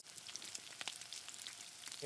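Faint sizzling and crackling of breaded plant-based chicken pieces frying in oil in a pan.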